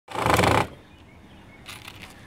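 Cordless drill running in one short, loud burst of about half a second while fastening a wire-mesh squirrel exit trap at the roof line, followed by a faint click near the end.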